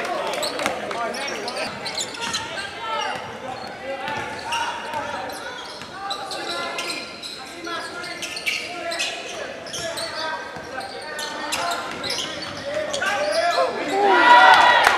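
Live sound of a basketball game in a large gym: a ball bouncing on the hardwood court amid indistinct players' and spectators' voices echoing in the hall, the voices growing louder near the end.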